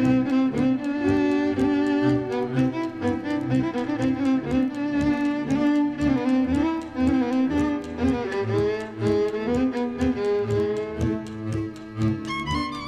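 Instrumental passage of a Hungarian folk song played by a string band: fiddle melody over bowed cello and double bass, with a steady beat.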